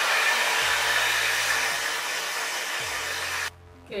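Handheld hair dryer running on its cold setting, a steady rushing blow that cuts off suddenly about three and a half seconds in. It is drying a first coat of gel glue along the hairline until it turns tacky.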